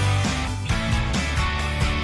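Background music with a moving bass line, at a steady level.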